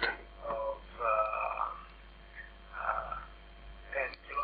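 Decoded digital voice, Opus codec over a QPSK link, playing from a phone's speaker: a man's recorded voice coming through in a few short, faint phrases with gaps between them.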